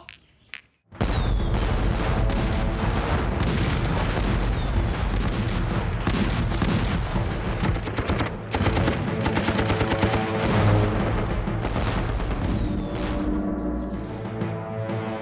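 Heavy battle gunfire, a dense fusillade of rifle and machine-gun shots, starting suddenly about a second in and running on without a break, with dramatic film music underneath.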